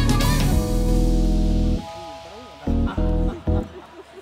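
Background music with guitar and bass holding steady chords. It drops back about two seconds in, then returns in short phrases before fading near the end.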